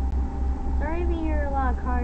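A high-pitched voice about a second in, rising then falling in pitch, over a steady low rumble.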